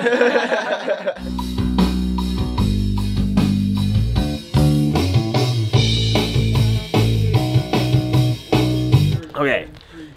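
A short laugh, then about a second in a rock track starts. A bass guitar plays low notes over a drum beat, and the track stops shortly before the end.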